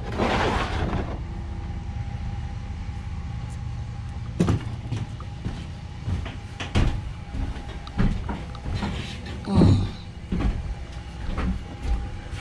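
Handling knocks and thumps as a plastic gas can is carried into an enclosed cargo trailer with a plywood floor: a brief rustle at the start, then scattered knocks, the loudest about ten seconds in, over a steady low hum.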